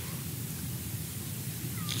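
A pause in speech: steady room tone and recording hiss, with no distinct sound.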